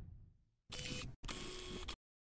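A camera shutter sound effect: two mechanical bursts in quick succession, starting just under a second in, after the tail of a whoosh fades out at the start.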